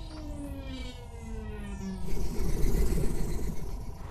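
Cartoon soundtrack music with slowly falling tones. About halfway through, a louder rushing, rumbling sound effect joins it as two cartoon vehicles approach.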